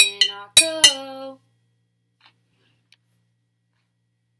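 Glass mason jars holding different amounts of water tapped in quick succession, about four taps in the first second and a half, each ringing with a clear note.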